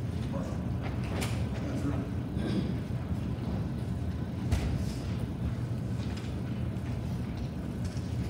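Steady low rumble of a large hall's room noise, with a few faint knocks and creaks as people move about at the front.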